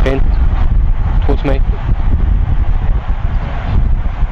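Steady low outdoor rumble with short snatches of people's voices near the start and again about a second and a half in.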